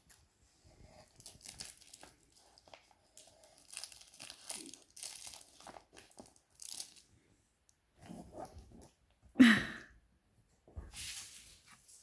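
A dog rummaging in a cardboard box of plastic-wrapped treat packs, with irregular crinkling and rustling of the packaging as it noses and tugs at the contents. A short, loud voice-like sound comes about nine and a half seconds in.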